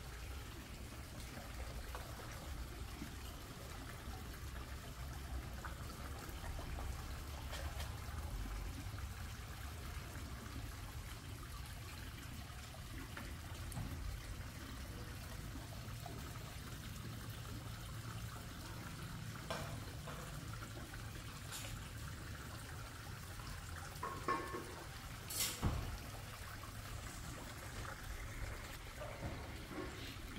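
Water trickling and splashing steadily into a garden koi pond, faint, over a low rumble. A few short clicks break in during the last third, the loudest two close together about twenty-five seconds in.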